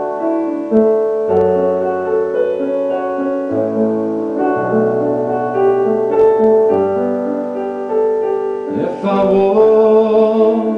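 Roland RD-700SX digital stage piano played in a piano voice: held chords changing every second or so under a melody line, as an instrumental passage between sung lines.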